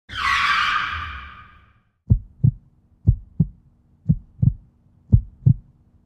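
Intro sound effect: a rushing swell that fades away over the first two seconds, then a heartbeat of low double thumps about once a second.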